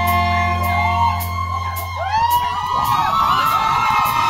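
A concert crowd whooping and yelling. A held low note from the band rings under it and cuts off about halfway through.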